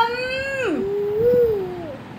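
A baby vocalising: a long, high, drawn-out 'aah' that drops away before a second in, followed by a softer, lower held sound that wavers up and down.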